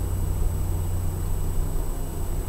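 A steady low hum with a faint hiss: background room noise in a pause between speech.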